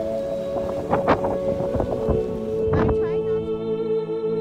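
Ambient background music with sustained organ-like tones over wind noise on the microphone, with a few brief gusts or knocks. About three and a half seconds in, the wind noise stops and only the music goes on.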